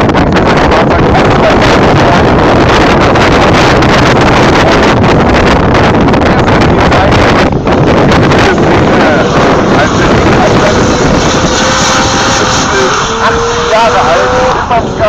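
Steady rushing noise of wind on the microphone over distant race-car engines. In the last few seconds a drift car's engine comes through at high revs, its note climbing.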